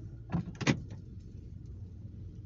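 Two short knocks inside a car cabin, about a third of a second apart, over the car's steady low hum.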